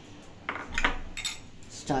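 A few light clinks of a glass mixing bowl against small steel bowls as beaten egg mixture is poured into them.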